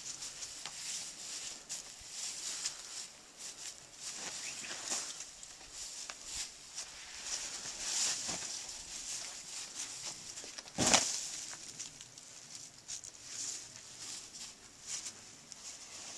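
Faint scuffs and scrapes of a climber's hands and rock shoes moving on the boulder, with one sharp knock about eleven seconds in.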